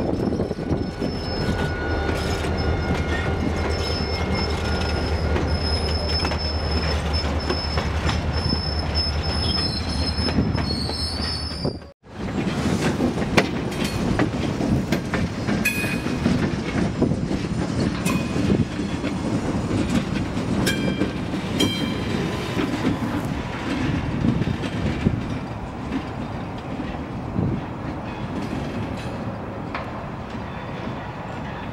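Diesel-hauled freight train passing close by: a steady low locomotive engine drone with thin high wheel squeals that rise just before a cut about 12 seconds in. After the cut, freight cars roll by with clicks over rail joints and short squeals from the wheels.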